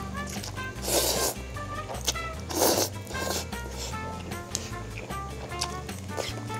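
A person slurping ramen noodles off chopsticks, two loud slurps about a second in and again near three seconds, over light background music.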